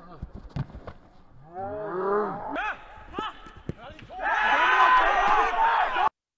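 Footballers shouting on the pitch, swelling about four seconds in into loud overlapping shouts and cheers that cut off suddenly at the end.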